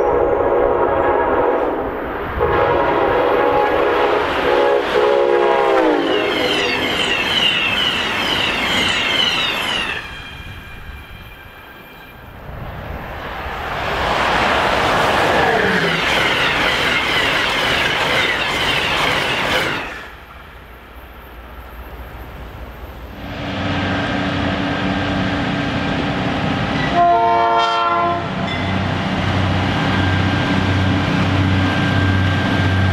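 Train horn chords blowing as trains pass, the horn dropping in pitch as it goes by, with a second passage of loud wheel-on-rail noise in the middle. After that, a low, pulsing locomotive engine drone runs, with one short horn toot near the end.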